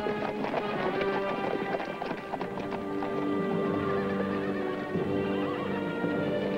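Horses galloping, a rapid clatter of hoofbeats that is busiest in the first few seconds, under a film score of long held orchestral notes.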